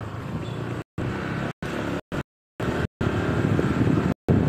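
Car driving slowly, a steady low rumble of engine and road noise, with the recording cutting out to complete silence several times for a fraction of a second each.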